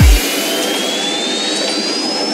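Psytrance breakdown: shortly after the start the kick drum and bassline cut out. What remains is a rushing noise with a synth sweep rising steadily in pitch, a build-up riser.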